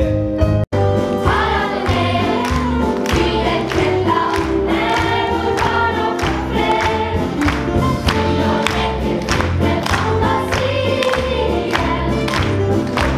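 A song sung by a group of voices, like a choir, over backing music with a steady beat, from a stage musical. The sound breaks off for an instant just under a second in, then the song carries on.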